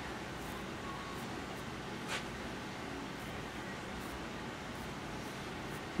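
Steady low room hiss with no clear working sound, broken only by one brief, faint click about two seconds in.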